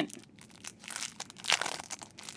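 Clear plastic sleeve around a small paper pad crinkling as it is handled, in short scattered crackles with the sharpest one about one and a half seconds in.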